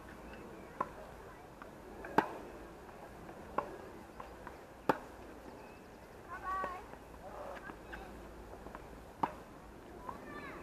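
Tennis ball struck back and forth in a rally on outdoor hard courts: sharp racket-and-ball pops about every second and a half, the loudest about two seconds in, with a gap in the middle. A short voice call comes near the middle.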